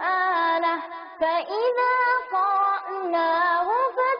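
A single high-pitched voice singing a slow melody in long held notes with ornamented turns between them, with no beat.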